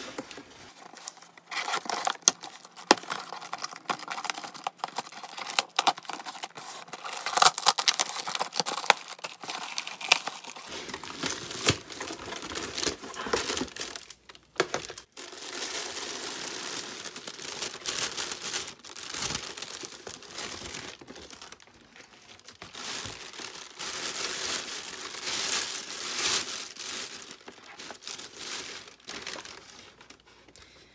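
Packaging being torn open by hand: scissors snipping and tearing through packing tape and a cardboard box, with sharp rips and clicks in the first third, then thin plastic bags crinkling and rustling steadily as the contents are unwrapped.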